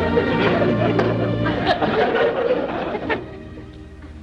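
Orchestra playing background music under studio audience laughter; the laughter dies away about three seconds in, leaving the music quieter.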